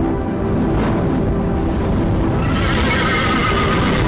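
Music from a team-introduction video playing over the venue's loudspeakers. A horse-whinny sound effect rises over it from about two and a half seconds in.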